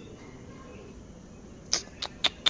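Steady faint background hiss, then one short, sharp, high click near the end.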